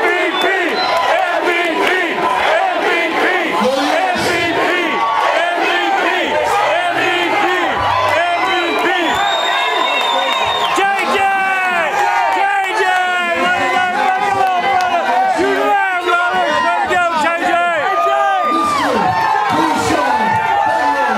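A large crowd of fans cheering and shouting, many voices overlapping without a break.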